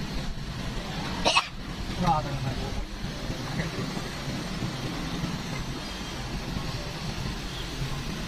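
Steady low engine and road noise heard from inside a car moving slowly through street traffic, with a short sharp burst a little over a second in and a brief pitched call just after.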